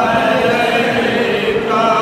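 Men's voices chanting a Salam, a devotional salutation to the Prophet Muhammad, together in unison with long held notes.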